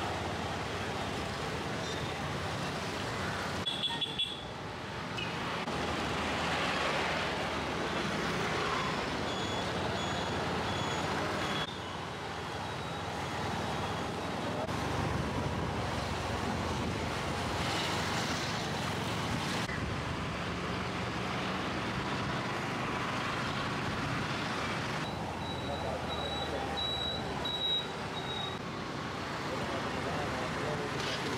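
Busy town street: motorcycles and other traffic passing steadily, with people's voices in the background. The background changes abruptly a few times.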